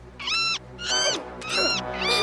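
Gulls calling: a run of short, harsh, arched cries repeated about every two-thirds of a second, over background music.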